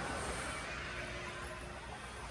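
Steady background hum of a large indoor hall, with a faint steady low tone and no distinct events.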